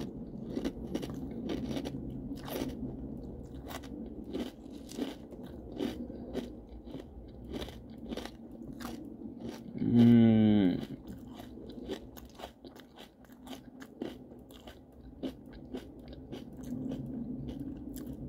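Close-up chewing of a mouthful of corn flakes in milk, with many sharp crunches throughout. About ten seconds in there is a loud hummed "mmm" that falls in pitch.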